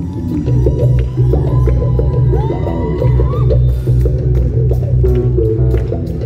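A band playing live music loud through a concert sound system, with a heavy bass line and a melody over it. A high note glides upward about halfway through, and sharp percussion strokes come in more often toward the end.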